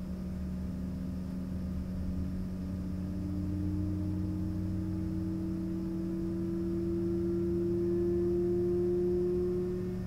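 Embraer ERJ-135's Rolls-Royce AE 3007 turbofan heard from inside the cabin while spooling up during engine start: a steady low hum with a whine that rises slowly in pitch and grows louder toward the end.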